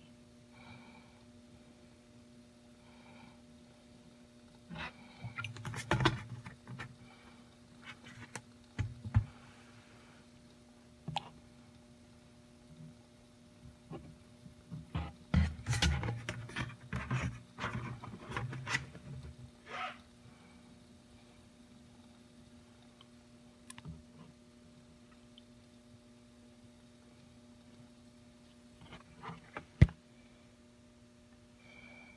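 Transmission fluid being poured from a plastic jug into a plastic funnel: irregular clusters of glugging and plastic knocks, loudest a few seconds in and again in the middle, with a sharp click of the jug against the funnel near the end. A steady low hum runs underneath.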